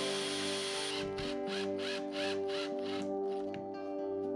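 A DeWalt 20V Max cordless drill whirs for about the first second as it drives a screw into a wooden board, then runs in short repeated bursts, about three a second, as the screw is set. Background music plays throughout.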